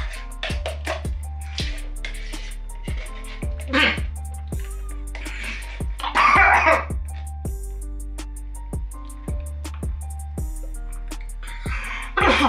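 Backing music with a steady beat runs throughout. Over it a man clears his throat and makes strained noises while eating spoonfuls of thick dulce de leche without a drink. The loudest of these comes about six seconds in.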